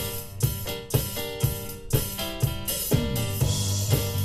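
Live rock band playing: electric guitars and bass over a drum kit keeping a steady beat of about two hits a second. Near the end the bass slides down and a cymbal wash rings.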